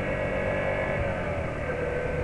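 Single-cylinder Yamaha XTZ motorcycle engine running under way, its note easing down a little in pitch over the first second and a half. The engine runs over steady wind and road rush.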